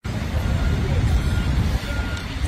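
Steady low outdoor rumble with faint distant voices in it.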